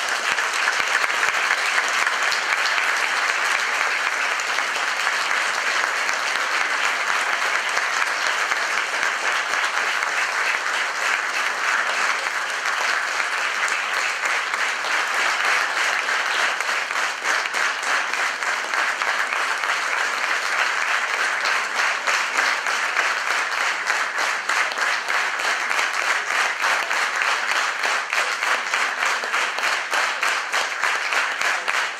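Large concert-hall audience applauding steadily right after the final chord of a piano concerto: dense, even clapping with no letup.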